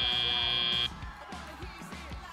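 FIRST Robotics Competition end-of-match buzzer: a steady, high-pitched electronic tone that cuts off suddenly just under a second in, leaving quieter arena background noise.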